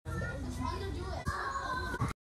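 Several children's voices chattering and calling out at once, indistinct, cutting in suddenly after silence.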